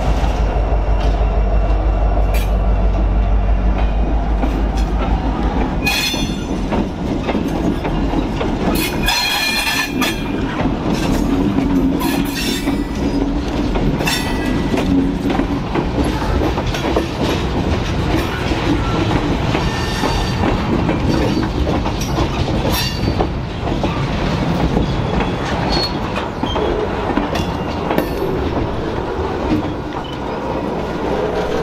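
Diesel-electric freight locomotives pass close by with a deep engine rumble for the first few seconds. Then freight cars loaded with lumber roll slowly past, their wheels clicking over rail joints, with brief high-pitched wheel squeals about six and nine seconds in.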